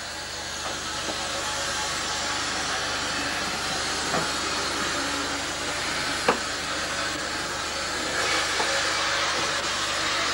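Steam hissing steadily from the North British Railway 0-6-0 steam locomotive No. 673 "Maude" as it moves slowly along the track. Two sharp metallic clanks come through, the louder one about two-thirds of the way in.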